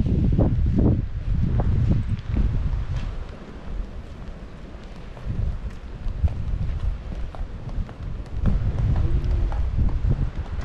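Wind buffeting the microphone of a body-worn action camera, in gusts that ease off in the middle and pick up again near the end, with the walker's footsteps on the tiled promenade.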